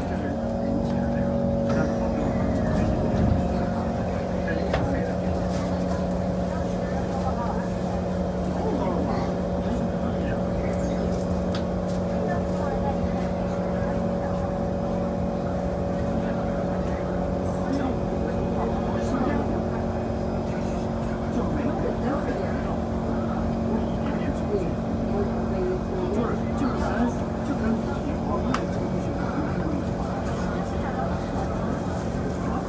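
Steady hum inside an SMRT C151 train car, holding several constant tones throughout, with passengers talking in the background.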